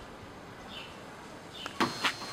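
Quiet outdoor background with a small bird giving a short, high, falling chirp about once a second, then a sudden sharp click near the end.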